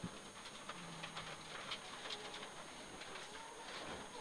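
Faint in-car sound of a Mitsubishi Lancer Evo 9's turbocharged four-cylinder rally engine on a gravel stage: a low hum that steps up in pitch twice, with scattered light ticks.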